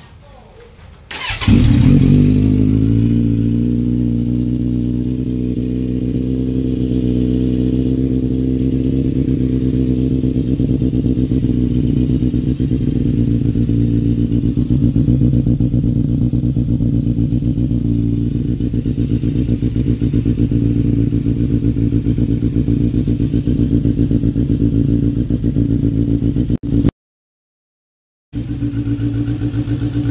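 Kawasaki Z900's inline-four with an SC Project exhaust, cold-started: it fires up about a second in and settles into a steady idle, the revs easing down slightly over the first few seconds. The sound cuts out for about a second near the end, then the idle carries on.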